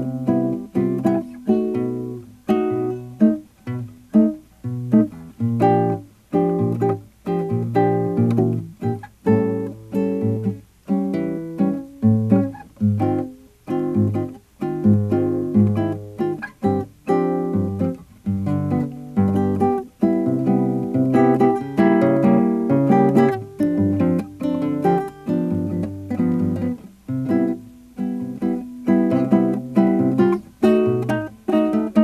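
Solo nylon-string classical guitar played fingerstyle: a rhythmic pattern of plucked chords and melody notes over a running bass line.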